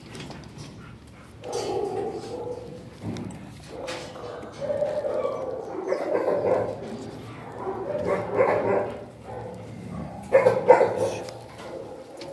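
Dogs barking and whining in a shelter kennel, in about four bursts of a second or two each.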